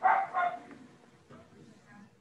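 A dog barks twice in quick succession, sharp and short, with fainter sounds after.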